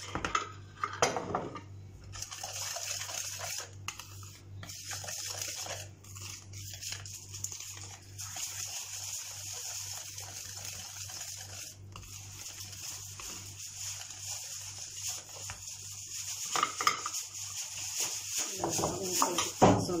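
Wire whisk beating flour into cake batter by hand, a steady run of scraping and light clicks of the whisk against the bowl as the flour is worked in gradually.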